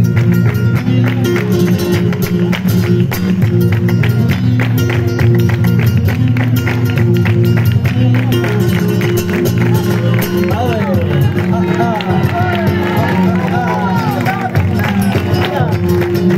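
Flamenco music played over a loudspeaker, with hand-clapping (palmas) keeping time along with it. A singing voice comes in about ten seconds in.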